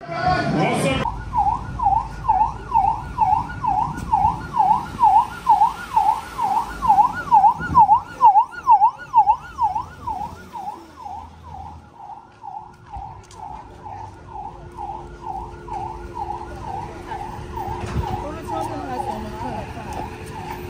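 A vehicle siren wailing rapidly up and down, about two and a half sweeps a second, swelling louder and then fading away after about ten seconds. A short whoosh comes at the very start.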